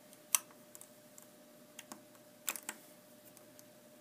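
A few sharp light clicks and taps of a crochet hook and rubber bands against the pegs of a small clear plastic loom, the loudest about a third of a second in and a quick cluster of two or three about two and a half seconds in.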